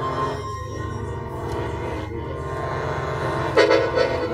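Experimental electroacoustic music of accordion with sampler and effects: sustained reedy chords over a dense, pulsing low drone. A louder, brighter chord comes in about three and a half seconds in.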